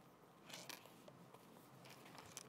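Near silence, with faint rustling of Bible pages being turned about half a second in.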